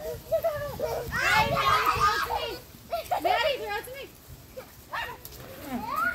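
Toddlers' voices as they play: high-pitched calls and chatter, loudest from about one to two and a half seconds in, with a quieter spell after about four seconds.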